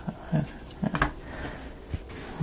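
Thin laser-cut plywood model pieces being pressed and slotted together by hand: a few light clicks and scrapes of wood on wood.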